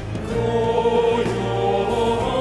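Male vocal group singing in harmony into microphones, with live band accompaniment; the voices come back in right at the start after a brief break and hold long notes.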